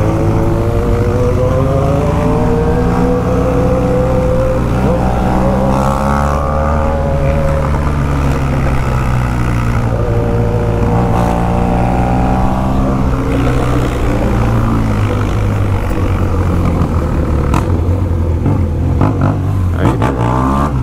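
BMW R1200 GS Adventure's boxer-twin engine under way, its pitch climbing as the bike accelerates and dropping back at each change, several times over, with steady road and wind noise beneath.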